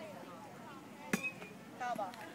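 A tee-ball bat striking once, a little over a second in: a single sharp clink with a brief metallic ring.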